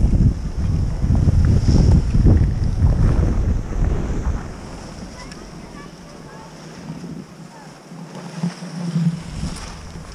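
Wind buffeting a GoPro's microphone while skiing downhill: a loud, gusty low rumble that dies away about four seconds in as the skier slows to a stop.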